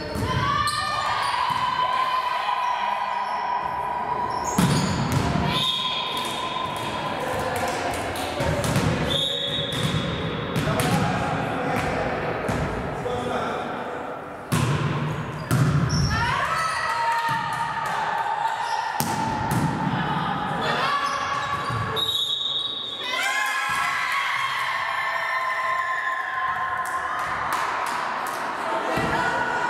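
Volleyball being played in a reverberant sports hall: repeated thuds of the ball being struck and hitting the wooden floor, with players' shouts and calls throughout.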